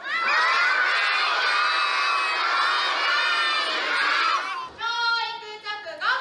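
A group of young kindergarten children shouting a chant together in unison. Near the end a single voice calls out one drawn-out line on its own.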